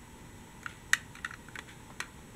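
Scattered small, hard clicks and clacks as a toy tram is handled and turned in the hand over a box of toy vehicles, the sharpest click about a second in.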